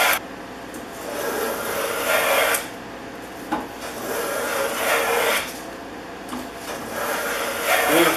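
Stanley No. 130 double-end block plane, its iron set in the other end, pushed along the edge of a wooden strip in three slow strokes, each a steady shearing hiss of the blade cutting a shaving.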